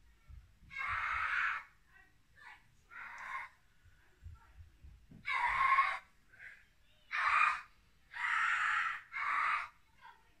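A woman breathing heavily close to the microphone: about six loud, breathy breaths of under a second each, a second or two apart.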